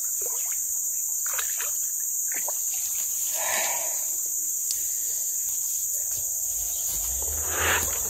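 Steady high-pitched chorus of insects in the forest, with a short burst of splashing noise about three and a half seconds in and some rumbling handling noise near the end.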